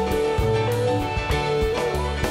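Rock band playing an instrumental jam live: a sustained melody line stepping up and down in pitch over bass, drums and keyboards, with regular drum hits.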